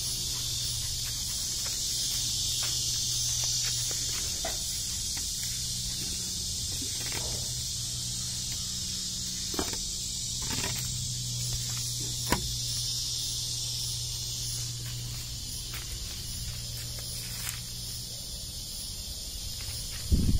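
Steady high-pitched insect chorus, with a low steady hum beneath it and a few faint rustles and clicks in dry leaves.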